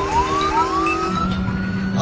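Police car siren winding up in three rising sweeps, the last climbing slowly and holding high, over a steady low vehicle drone that comes in about a second in.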